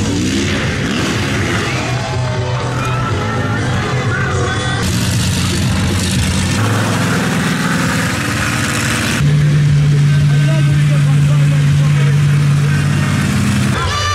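A monster truck's engine running with a steady drone, which gets louder about nine seconds in. Over it come the sounds of a show arena: a voice over the PA and music.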